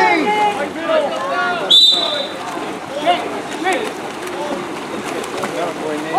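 A water polo referee's whistle blown once, a short shrill steady blast about two seconds in, over spectators' voices and splashing in the pool.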